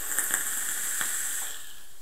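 A vape atomizer coil fired on a Think Vape Thor mod while drawn on: a steady high hiss and sizzle with a few sharp crackles. It stops about three-quarters of the way through as the button is released.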